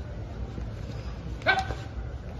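A dog barks once, a single short sharp bark about one and a half seconds in, over a steady low rumble of background noise.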